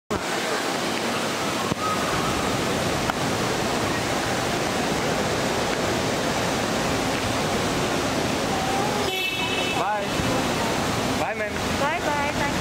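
A steady, loud rushing hiss with no rhythm or pitch, with a few short bursts of voices about nine seconds in and again near the end.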